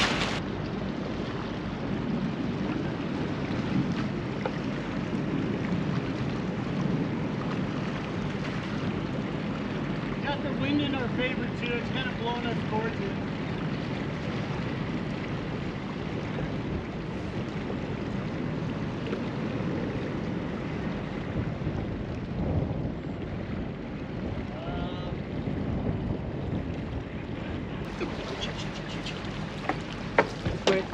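Steady low rumble of a boat under way, with water and wind noise on the microphone. Faint distant voices come through about ten seconds in and again near the end.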